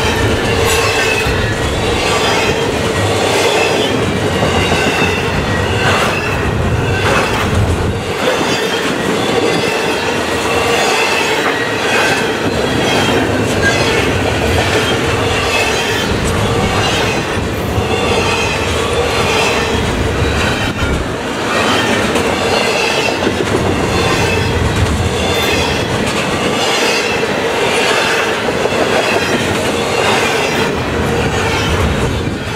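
Double-stack intermodal well cars of a freight train rolling steadily past: a continuous loud rumble of steel wheels on rail. A steady ringing tone and wavering higher whines ride over it, with occasional clacks of wheels over the rail.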